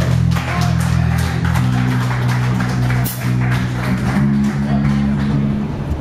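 Rock band playing live: electric bass holding low notes that change pitch every couple of seconds under electric guitar and regular drum hits. The music cuts off just before the end.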